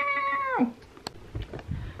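A cat meowing once: a single drawn-out meow, held at one pitch and dropping off at the end.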